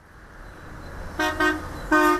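Road traffic rumble building up, with a vehicle horn giving two short toots, about a second in and again near the end.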